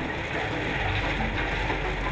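Steady running noise of heavy gravel-processing machinery: a tracked mobile screening plant and a wheel loader at work.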